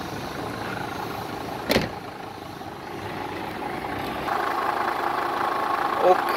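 A car engine idling steadily, growing louder from about four seconds in, with one sharp knock a little under two seconds in.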